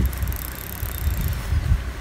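Spinning fishing reel clicking rapidly for about the first second and a quarter while a hooked fish pulls on the bent rod, with wind rumbling on the microphone.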